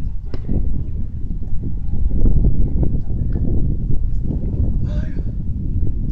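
Wind buffeting an open-air phone microphone: a loud, uneven low rumble, with faint distant voices and a short call about five seconds in.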